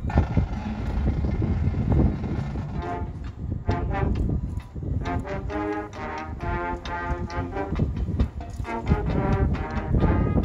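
Marching band playing its field show. Heavy percussion hits fill the first three seconds, then the brass comes in with short, loud chords punctuated by drum hits.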